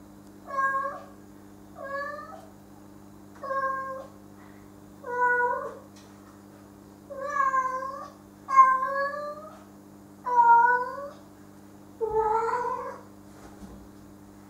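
Domestic cat meowing eight times, one meow roughly every one and a half to two seconds.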